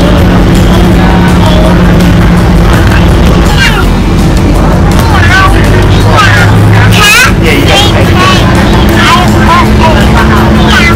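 Loud, steady engine hum heard from inside a moving bus. From about three and a half seconds in, short high squeaky chirps come again and again over it.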